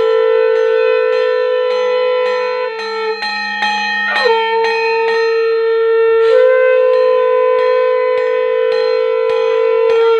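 Conch shells blown in long held notes, with the pitch dipping briefly about four seconds in. A bell is struck steadily about twice a second behind them.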